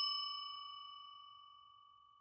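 The ringing tail of a bell 'ding' sound effect, several clear tones fading out over about a second. It is the chime of a notification bell being clicked in a subscribe animation.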